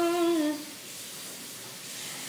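A woman singing unaccompanied holds the last note of a line, which dips and fades out about half a second in. Then there is a pause with only faint hiss.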